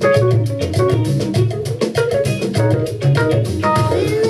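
Background music with plucked guitar, bass and drums over a steady beat.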